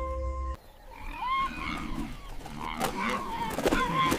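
Background music cuts off about half a second in, followed by the sounds of a spotted hyena attacking an antelope: animal calls that rise and fall in pitch, with a few sharp knocks of the struggle.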